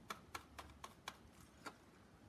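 Paintbrush dabbing paint through a stencil: about six faint light taps, roughly four a second.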